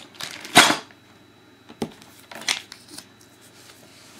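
A plastic bag of toy building pieces crinkling as it is handled, in a short burst about half a second in, followed by a few light, sharp clicks and taps.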